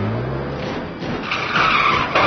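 Car engine revving up, rising in pitch, then tyres screeching from about halfway through as the car pulls away fast.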